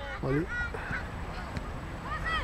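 A short shouted call about a quarter of a second in, then a fainter, higher call, over a low outdoor rumble.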